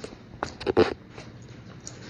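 Close mouth sounds of a person eating noodle soup, a short cluster of them a little under a second in.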